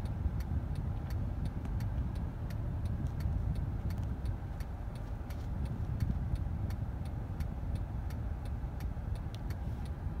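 A car's turn-signal indicator ticking steadily, about three clicks a second, over the low rumble of the engine and road heard inside the car's cabin.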